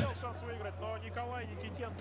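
Faint talking in the background over a steady low hum.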